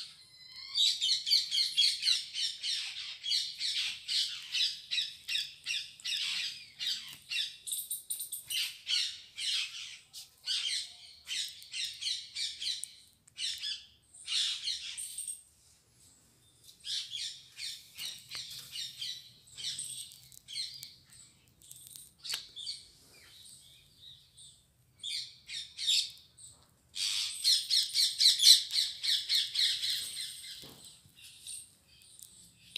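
Small birds chirping in quick, dense runs of repeated notes, thinning out for a while past the middle and growing loud again near the end.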